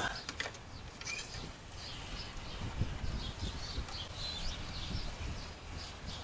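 Birds chirping repeatedly in the background, with a few light clicks and knocks near the start as the plastic dipstick cap is worked off the mower's Briggs & Stratton engine to check the oil.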